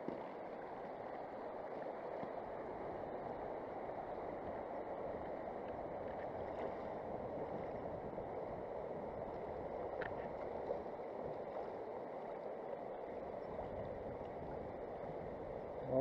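Shallow river current rushing steadily over a stony bed, with a faint tick about ten seconds in.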